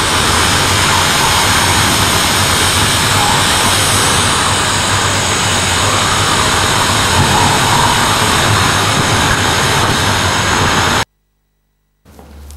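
A loud, steady wall of rushing noise, like static, that fills the whole range with faint held tones high up. It cuts off suddenly about eleven seconds in, leaving silence.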